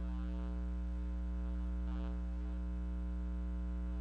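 Steady electrical hum and buzz with a ladder of overtones, unchanging throughout.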